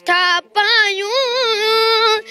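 A boy singing in a high voice: a short note, then a longer phrase whose pitch wavers in ornaments before settling into a held note.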